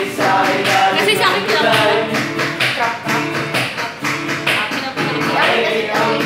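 Music: a song with singing over a steady beat.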